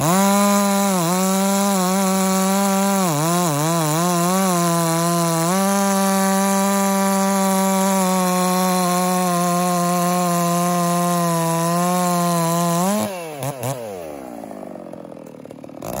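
XS660 two-stroke chainsaw at full throttle cutting through a log, its engine pitch sagging several times under load early in the cut. About thirteen seconds in it breaks through and revs up briefly, then winds down to idle before revving again at the very end.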